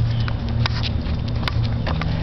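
Footsteps on a concrete sidewalk during a dog walk: light, irregular taps over a steady low hum.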